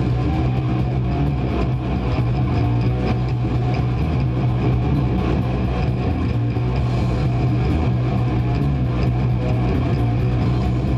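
Old school death metal band playing live: heavily distorted guitars and bass in a dense, steady wall of sound over fast, regular drumming.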